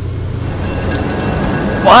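A steady low rumble with a faint hiss, slowly growing louder, like outdoor urban background noise. A man starts speaking near the end.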